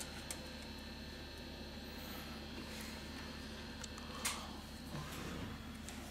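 Faint clicks and scrapes of a thin metal opening tool being worked into the seam between a smartphone's back cover and frame, the clearest click about four seconds in, over a steady low hum.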